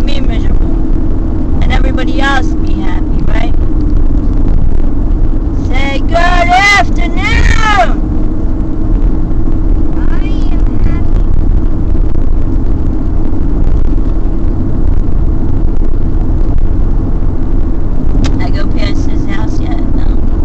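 Steady road and engine noise inside a moving car's cabin: a continuous low rumble with a steady hum.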